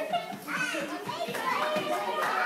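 Young children chattering and calling out, several voices overlapping, mixed with adult voices.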